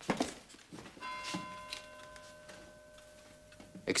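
A short sharp knock right at the start, then a bell chime struck about a second in that rings on in several tones and slowly fades.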